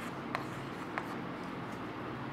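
Chalk scratching and tapping on a chalkboard as a diagram is drawn, with two short sharp taps, the second about a second in, over a steady low hum.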